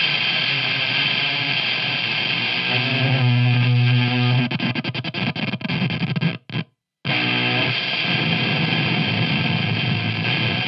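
Electric guitar played through the Dirge Electronics Slowly Melting effects pedal, a heavily distorted, noisy wall of sound. About three seconds in a low note is held, then breaks into stuttering chops and cuts out completely for about half a second before the distorted sound comes back.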